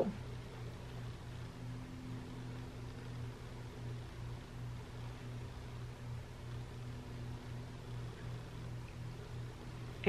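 Quiet room tone: a steady low hum under a faint even hiss, with no distinct events.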